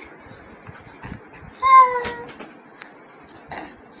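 A baby gives one short, high-pitched cry that falls slightly in pitch, about halfway through.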